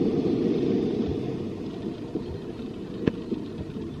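Muffled low rumble of seaside ambience, slowly fading, with a single click about three seconds in.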